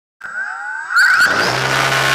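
Electric motors of a radio-controlled camera aircraft spinning up with a rising whine, then a loud steady rush of motor and wind noise from about a second in.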